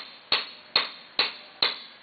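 Caulking mallet striking a caulking iron four times, about two blows a second, driving oakum into a plank seam of a wooden boat hull. Each blow is a sharp knock that dies away quickly.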